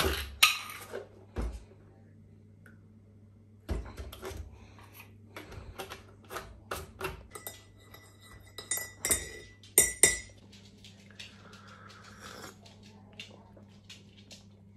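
Hard objects being handled: scattered knocks and clinks, several of them metallic and ringing briefly, loudest a little after the middle. A short scrape follows near the end, over a faint steady hum.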